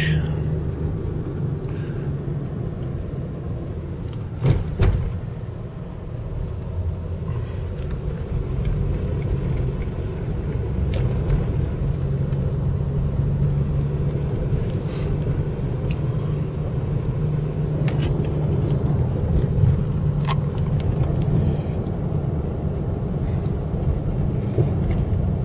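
Car in motion heard from inside the cabin: a steady low engine and road rumble, with a brief knock about four and a half seconds in.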